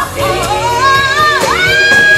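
Female R&B vocal trio singing live with a backing band. About halfway through, a lead voice slides up and holds one long high note.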